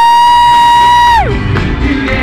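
One high-pitched scream close to the microphone. It slides up, holds a steady pitch for about a second and a half, then drops away, over live concert music and crowd cheering.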